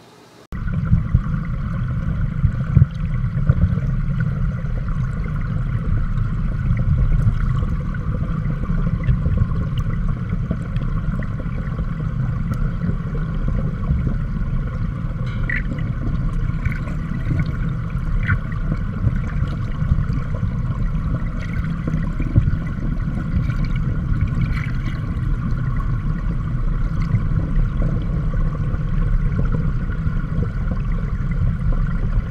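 Flowing water heard through an underwater camera: a steady, deep rush that sets in abruptly about half a second in, with a few faint clicks.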